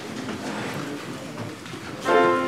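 A congregation rising from the pews: shuffling, rustling and small knocks as people stand, with a faint murmur of voices.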